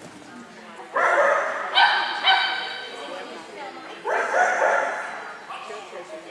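A dog barking and yipping loudly on the run, a burst of barks about a second in and another about four seconds in.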